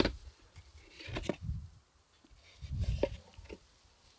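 A cardboard box handled and opened by gloved hands: soft rustles and light knocks in two short spells, about a second in and again about three seconds in.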